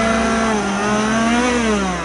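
Chainsaw engine running and revving, its pitch drifting gently up and down, then dropping near the end.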